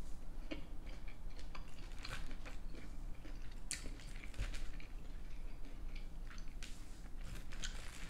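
Close-up chewing of a mouthful of loaded tater tots with cheese and ranch: wet mouth sounds with many small, irregular clicks and soft crunches.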